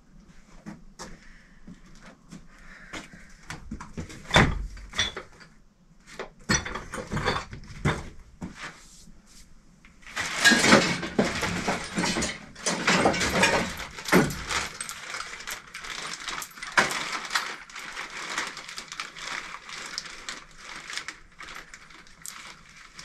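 Irregular knocks, clunks and rattles of stored wooden pieces and odds and ends being shifted about by hand while rummaging through a pile. A busier stretch of clattering comes about halfway through.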